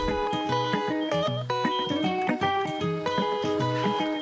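Background music: a melody of short notes that change in quick steps.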